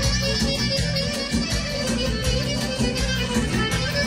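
Live Romanian wedding band playing manele party music, with a steady dance beat and a strong bass line.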